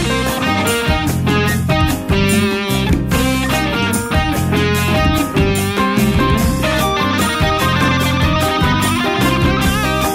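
Rock band instrumental passage: an electric guitar plays a melodic lead line over bass and a steady drum beat, with a held, wavering note near the end.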